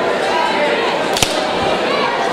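Crowd chatter and voices in a large hall, with one sharp smack a little over a second in.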